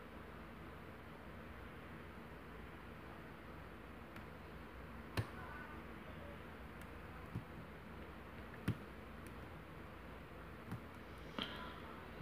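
A few faint, sparse clicks of a steel pick working the pins of a brass pin-tumbler challenge lock held under tension in a deep false set. The loudest click comes about five seconds in, over a low steady hiss.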